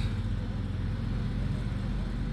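A motor vehicle engine idling: a steady low hum.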